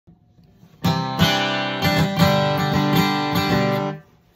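Dreadnought acoustic guitar strummed: a run of chord strums begins about a second in and rings on, then is cut off sharply just before the end.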